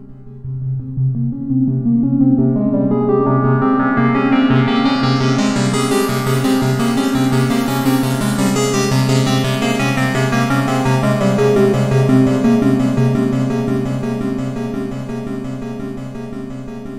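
Arturia MicroFreak hardware synthesizer playing a repeating saw-wave note sequence with effects processing. Its filter cutoff is swept by drawn-in MIDI CC automation, so the sound grows steadily brighter over the first several seconds and then gradually darkens again.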